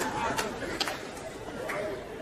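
Theatre audience laughing and murmuring after a punchline, the noise dying down, with a few sharp clicks in it.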